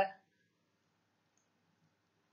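A spoken word ends just after the start, then near silence with only a faint click or two.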